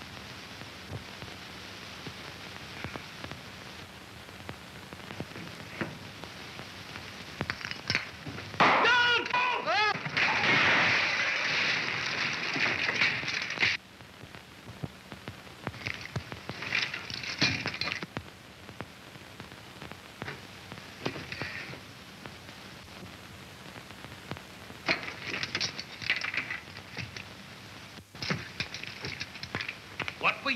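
A wavering tone about nine seconds in, then a loud crash of breaking and falling debris from a light fixture and ceiling plaster coming down, lasting about four seconds and cutting off suddenly. Shorter crackling bursts follow later, over a constant hiss and crackle of old film soundtrack.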